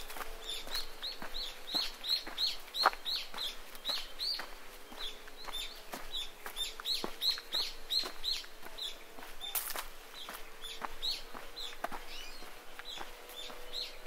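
A bird calling over and over, short high chirps about two to three a second, over footsteps on a dirt track and a faint steady hum.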